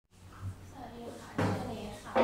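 Nylon-string classical guitar strummed once about one and a half seconds in, the chord ringing on, the opening strum of the song.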